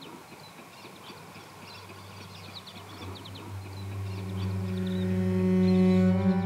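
Birds chirping in quick, repeated short calls over a low hum. About halfway through, a sustained musical drone note swells in and keeps getting louder.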